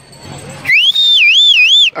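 A loud, high whistled note that glides upward and then wavers up and down about three times, lasting just over a second. It comes after a moment of quiet ambience.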